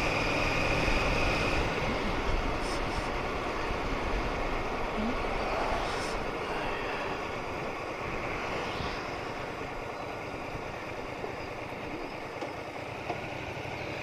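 Cruiser motorcycle riding on an open road: a steady mix of engine and wind noise that grows gradually quieter over the stretch.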